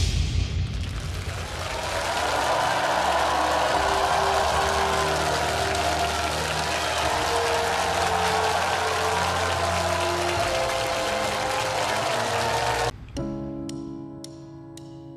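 Studio audience cheering and applauding over a music bed of sustained notes, starting loud and abruptly. About thirteen seconds in it cuts off sharply, and a quiet instrumental intro of separate struck notes begins.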